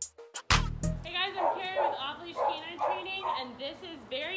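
The intro music ends on one loud final hit about half a second in. Then a German Shepherd whines and yips over and over in short, high, wavering cries.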